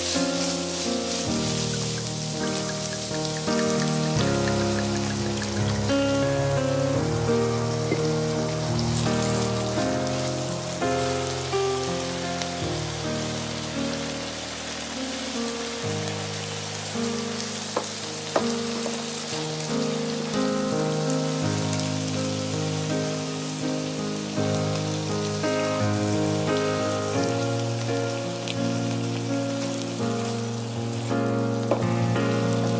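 Minced beef, onion and carrot sizzling in a frying pan as they are stirred with a wooden spatula, a steady hiss, over instrumental background music.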